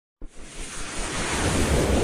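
Rushing, wind-like whoosh sound effect of an animated news intro, starting with a brief click out of silence and swelling steadily louder.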